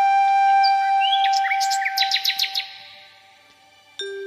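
Background music: a flute holds one long note while bird chirps and twitters sound over it around the middle, then the music fades out. A new flute tune starts right at the end.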